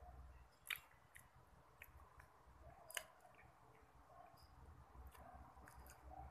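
Near silence: faint room tone with a few scattered faint clicks, the sharpest about three seconds in.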